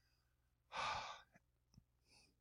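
A man's short breathy sigh about a second in, followed by a couple of faint mouse clicks.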